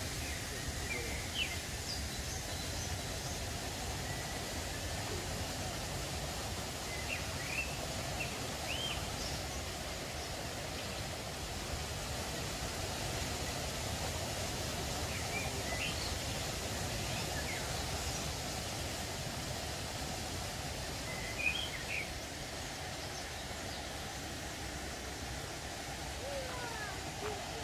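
Small birds giving short, high chirps several times, scattered through a steady background hiss of outdoor ambience.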